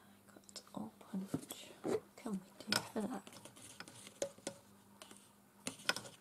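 Low muttering or whispering under the breath, mixed with small clicks and knocks of craft supplies being handled on a desk, with a few sharp clicks near the end as things at the back of the desk are picked up.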